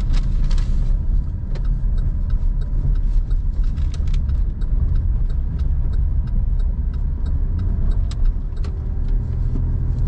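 A car in motion, heard from inside the cabin: a steady low road and engine rumble. From about a second and a half in until near the end, a turn-signal indicator ticks steadily at about two and a half ticks a second.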